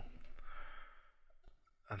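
A soft breath out into a close microphone, fading away within about a second, followed by a single faint click.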